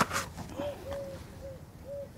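A bird calling in the background: a faint run of short, low, hooting notes, about three a second. A brief sharp knock sounds right at the start.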